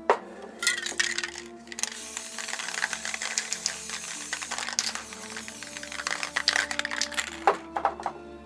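Aerosol spray paint cans hissing in uneven bursts as paint is sprayed, over background music with sustained notes. A couple of sharp knocks, one just after the start and one near the end.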